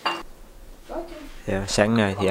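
A single sharp clink of crockery, a dish or bowl knocked or set down, ringing briefly. A person starts talking about a second and a half in.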